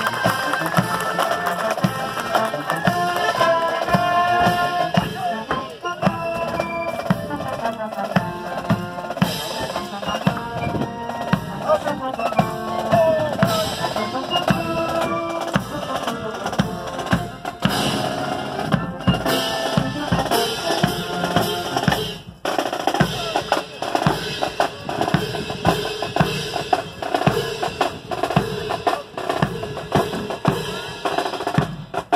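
Marine Corps marching band playing a march on brass with snare and bass drums. A little over halfway through, the brass melody drops away and the drums carry on alone, beating a steady marching cadence.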